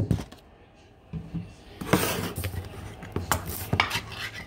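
A plastic colander and kitchen items handled at a stainless steel sink. There is a knock at the start, then after a short pause a couple of seconds of clattering knocks and scrapes.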